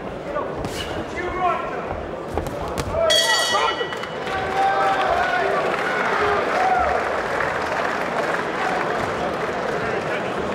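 Boxing ring bell struck about three seconds in, a clear ringing tone that dies away within a second, signalling the end of the round. Around it the arena crowd shouts and cheers, louder after the bell, with a couple of sharp thumps before it.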